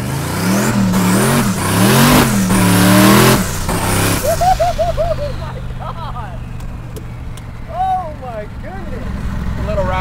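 Twin-turbocharged 408 Windsor small-block Ford V8 of a 1933 Factory Five hot rod pulling hard at full throttle, heard from inside the open cabin: the revs climb, dip at two quick upshifts of the manual gearbox, and climb again for about three and a half seconds. Then the driver lifts and the engine settles to a steady cruise, with laughter about four seconds in.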